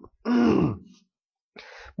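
A man clears his throat once, a short rough voiced sound whose pitch rises and then falls, followed near the end by a quieter breath in before he speaks again.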